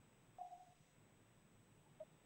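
Near silence on the call line, with one faint short tone about half a second in.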